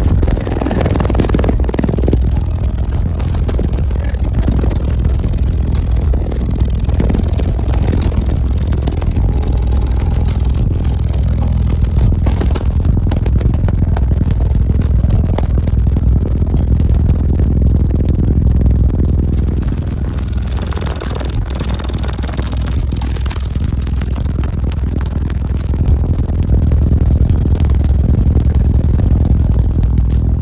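Music played at very high volume through two Resilient Sounds Team 18 subwoofers, heard from inside the vehicle: constant, brutal bass on the low end, easing slightly about two-thirds of the way through.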